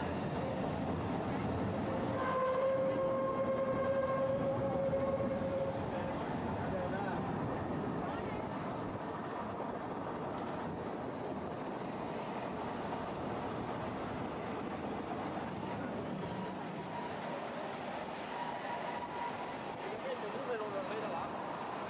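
Bernina Express train running, a steady rumble heard from inside the carriage. About two seconds in, a steady pitched tone sounds for about four seconds, and there are faint voices.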